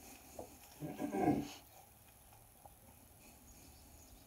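A brief low vocal sound about a second in, lasting about half a second.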